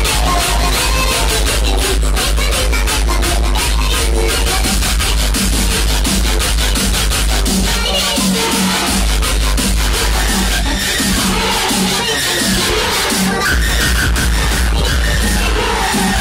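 Loud electronic dance music from a DJ set over a club sound system, with a steady beat and a heavy bass line. The bass drops out briefly about halfway through and thins again for a couple of seconds before coming back.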